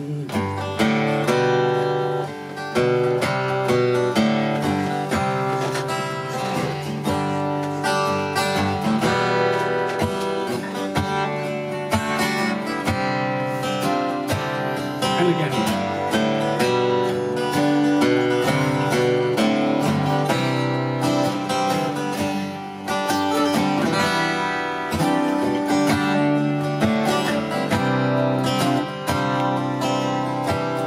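Live acoustic folk trio playing an instrumental introduction: strummed acoustic guitars with a fiddle playing held, wavering notes over them.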